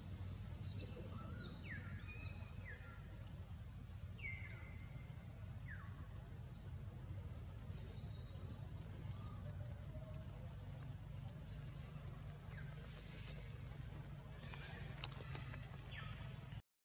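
Faint outdoor ambience: a steady low rumble with small high chirps and ticks throughout, and four short falling calls in the first six seconds, each a squeak that slides down in pitch.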